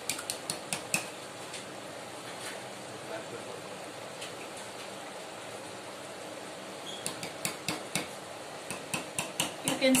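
Metal ladle knocking and scraping against a large metal cooking pot as cream is stirred into a simmering paneer curry. There is a short run of clinks at the start, then a denser run of quick knocks through the last three seconds.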